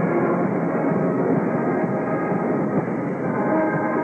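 Marching band playing, a dense and muffled sound with no highs, as heard on an old videotape recording.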